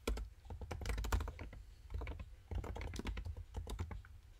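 Typing on a computer keyboard: two runs of quick key clicks with a short pause in the middle.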